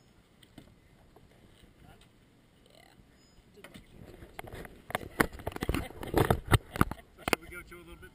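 Knocks and rubbing on a GoPro camera's housing as it is handled and turned, a quick cluster of sharp bumps in the second half.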